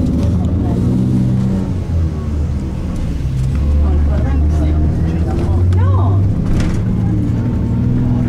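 Low engine drone of a bus driving in city traffic, heard from inside the cabin, swelling somewhat midway.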